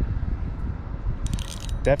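Spinning reel's drag clicking in a short quick run as a heavy catfish pulls line, over a low steady rumble.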